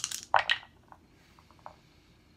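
Three dice rerolled into a wooden dice tray: a sharp clatter about half a second in, then a few small clicks as they settle.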